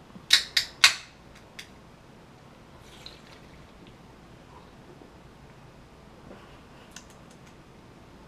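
A carbonated energy-drink can being cracked open: three sharp clicks in quick succession right at the start and another smaller click just after, followed by faint sounds of drinking.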